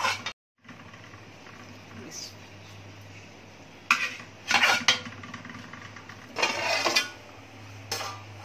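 Metal spoon scraping and clinking against a metal pan as potato and spinach are stirred, in a few short bursts, the longest near the end, over a steady low hum.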